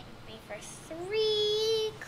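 A child's voice holding one long, steady sung note for about a second, starting about halfway through.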